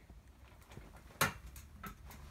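A sharp knock about a second in and a fainter click near the end, over quiet rustling: hands grabbing and knocking against a metal bunk-bed frame to attempt a pull-up.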